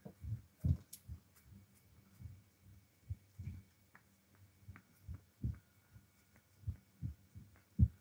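Irregular soft low thumps, about one or two a second, over a faint steady hum.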